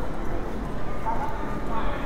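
Crowd of pedestrians walking on a hard tiled floor, many overlapping footsteps, with a steady murmur of passers-by talking.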